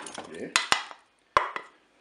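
Wooden spatula scraping and knocking against a plate as raw chicken pieces are pushed off it into the multicooker's pot: two quick sharp knocks about half a second in and a third a little over a second in.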